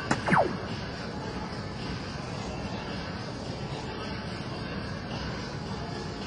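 A soft-tip dart hits an electronic dartboard with one sharp click just after the start. The machine's short, falling electronic hit tone follows at once. Then there is steady background noise from the hall.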